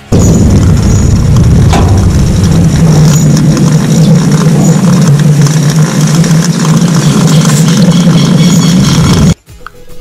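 Gas escaping from a cow's right-displaced abomasum through a 14-gauge needle in the right flank: a loud, steady rush of air that starts abruptly and cuts off suddenly near the end. It is the abomasum being decompressed.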